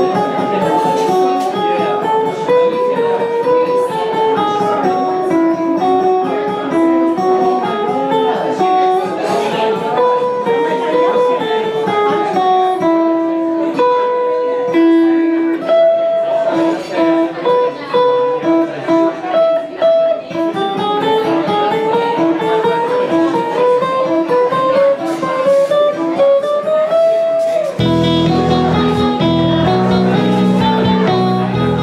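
Semi-hollow electric guitar playing a single-string exercise melody, one note at a time, stepping up and down. A fuller, lower sound comes in near the end.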